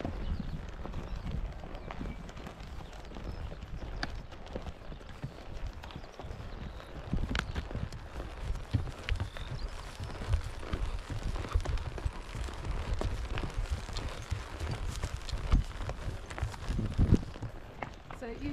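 A horse walking on a grassy dirt trail, heard from the saddle: soft, irregular hoof falls and knocks over a steady low rumble.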